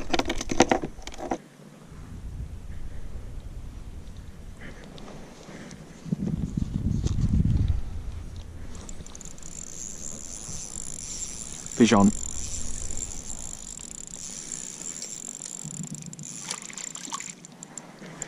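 Water slapping on a plastic fishing kayak and handling noise on the camera, with a louder low rumble about six seconds in. A thin, steady high-pitched whine runs from about nine seconds in until just before the end, while a fish is being hooked and fought on the spinning rod.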